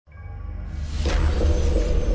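Opening of a TV show's intro music: a deep bass comes in at once, and about a second in a sweeping, crashing sound effect hits over it.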